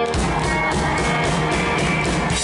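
Live rock band playing an instrumental on electric guitar and drum kit, with a steady drum beat.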